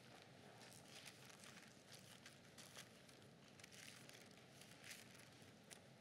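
Near silence: room tone, with faint scattered ticks and rustles.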